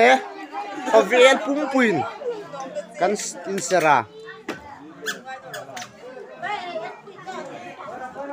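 Several people talking at once in lively chatter, with a few high, sliding exclamations in the first half.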